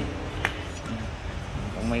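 Handling noise from a metal cutting machine on its steel stand as it is turned over by hand: one sharp click about half a second in, with faint speech behind it.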